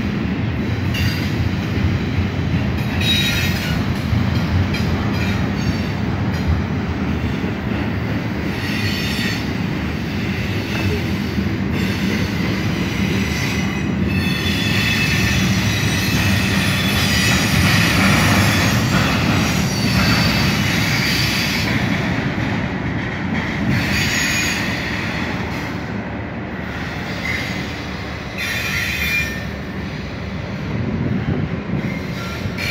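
Double-stack intermodal container cars of a freight train rolling past: a steady rumble of steel wheels on rail, with high-pitched wheel squeal coming and going several times.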